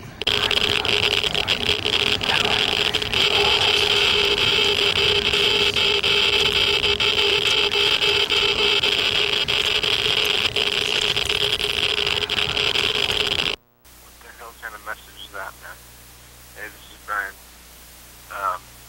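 Loud, dense radio-like noise with voices buried in it, holding steady and then cutting off abruptly about thirteen and a half seconds in. A quiet stretch follows, with a few faint, short wavering sounds.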